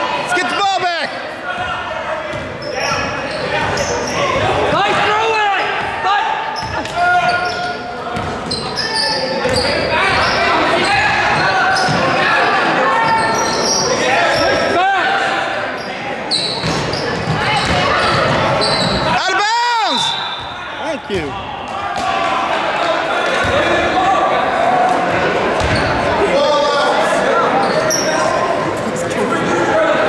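Basketball game on a hardwood court in a large, echoing gym: a ball bouncing as it is dribbled, sneakers squeaking, and indistinct voices of players and spectators calling out.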